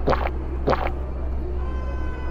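Hot apple tea slurped through a straw from a plastic cup, two short slurps about half a second apart.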